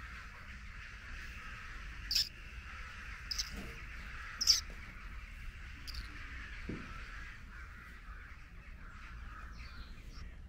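Birds calling outdoors: a steady background of distant chirping with four short, sharp calls, the loudest about four and a half seconds in.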